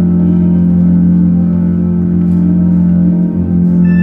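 Organ music holding a steady low chord, with new higher notes coming in near the end.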